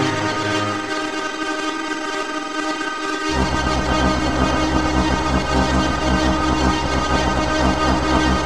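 Dark, experimental synthesized-orchestra music: a dense chord of many sustained steady tones. About three seconds in, a deep bass drone enters abruptly with a fast flutter and carries on under the chord.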